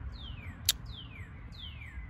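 A bird singing a series of clear whistled notes, each sliding down in pitch, about three in the two seconds. A single sharp click comes about a third of the way through.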